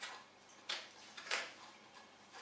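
Small fine-pointed scissors snipping three times, each a short sharp click about two-thirds of a second apart.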